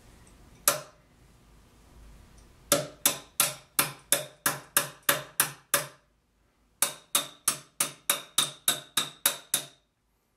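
Ratchet wrench clicking as a bolt on a sculpture armature's metal rod clamp is worked. There is one click about half a second in, then two runs of about ten even clicks, roughly three a second, separated by a pause of about a second. The second run carries a faint metallic ring.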